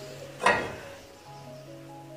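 Faint background music with a short knock from the cookware about half a second in.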